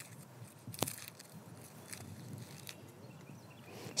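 Faint crackling and rustling of dry outer leaf wrappers being peeled off a freshly dug garlic bulb by hand, with one sharper crackle a little under a second in. This is the bulb being cleaned, its old leaves stripped away.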